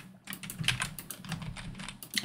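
Typing on a computer keyboard: a quick, irregular run of keystrokes as a line of code is entered.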